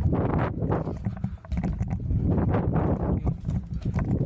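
BMX bike riding over plywood skatepark ramps: tyres rolling and rumbling on the wooden surface in rising and falling washes, with repeated short knocks as the bike crosses the ramp panels, and a steady low rumble from air rushing over the action camera's microphone.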